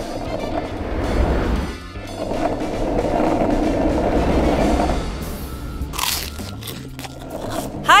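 Skateboard wheels rolling along a path, a rumbling that fades out about five seconds in, over background music. A short sharp sound comes about six seconds in.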